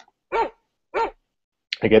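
A recorded dog barking twice, two short barks about half a second apart, played back from a WAV sound file.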